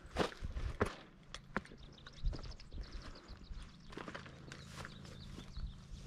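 A hiker's footsteps on granite rock and dry grass, several distinct steps in the first couple of seconds, then softer.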